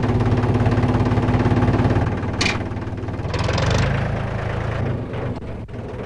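Farm tractor's diesel engine running steadily with a low, even hum. A brief burst of noise comes about two and a half seconds in.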